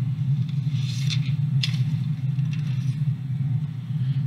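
A steady low hum, with a few faint short hissy sounds about a second in.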